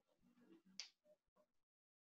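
Near silence: faint room tone with soft indistinct murmurs and one brief faint hiss just under a second in.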